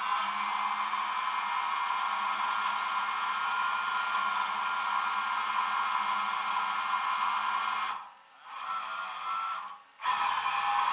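Steady hydraulic whine and hiss from the rollback tow truck's winch system as its cable is paid out along the deck. It stops about eight seconds in, comes back weaker for about a second, then cuts off near the end.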